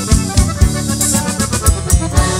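Norteño band playing an instrumental passage: a button accordion carries the melody over bass and a drum kit keeping a steady, driving beat.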